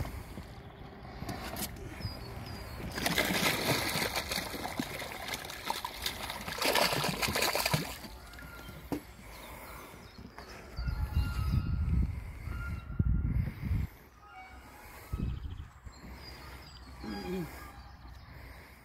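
Lake water splashing and sloshing in two bursts as live carp are released into it, followed by low rumbles and faint voices.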